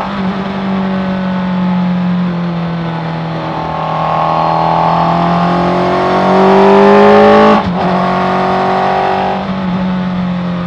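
Suzuki Hayabusa inline-four motorcycle engine in a Raptor R kit car, heard from onboard at racing speed. The revs climb under acceleration, loudest about seven and a half seconds in, then cut off abruptly for an upshift and pull on at a lower pitch.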